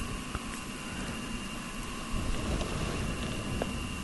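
Steady background hiss of a studio microphone with a faint steady hum through it, and a few faint clicks.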